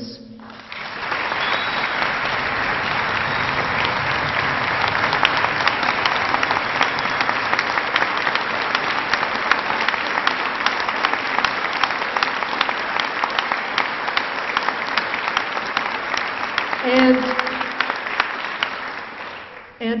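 A large audience applauding: dense, steady clapping that starts about a second in and fades away just before the end.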